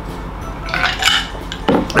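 Ice clinking in a drinking glass as it is lowered, then the glass set down on a table with one sharp knock near the end.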